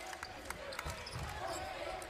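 Basketball dribbled on a hardwood court, a scatter of sharp bounces over the steady noise of an arena crowd.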